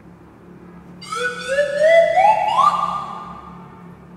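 Comic sound-effect sting: a whistle-like electronic tone that climbs in a quick run of short steps, starting about a second in and then fading out.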